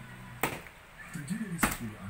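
A half-filled plastic water bottle is flipped and hits the floor with two knocks, a light one about half a second in and a louder one near the end. It falls over on its side, a failed bottle flip.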